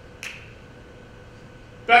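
A single short, sharp click about a quarter second in, followed by quiet room tone in a hall.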